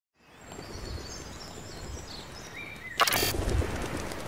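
Outdoor ambience fading in with faint bird chirps, then about three seconds in a sudden loud flutter of pigeons' wings as a flock takes off.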